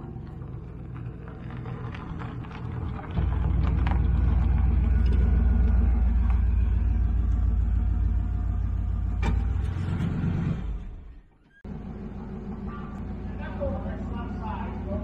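A motor vehicle engine running as a low rumble that jumps much louder about three seconds in, holds for some seven seconds, then drops away before a quieter stretch near the end.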